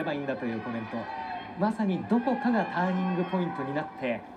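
A man speaking in Japanese: television sumo commentary.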